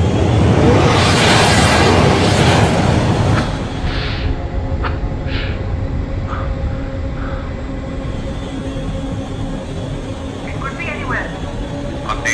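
Film sound effect of a fighter jet roaring past: a loud rush for about three and a half seconds that settles into a steady low engine drone under music, with a few short tones in the middle.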